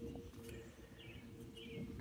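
Faint outdoor background: a few distant bird chirps over a low steady hum.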